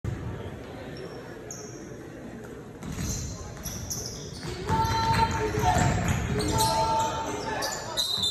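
A basketball game in a gym: the ball bounces on the hardwood floor amid the shouting voices of players and spectators, which get louder about halfway through.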